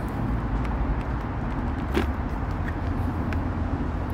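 Steady low rumble of background road traffic, with one sharp click about halfway through and a couple of faint ticks as the helmet and its visor are handled.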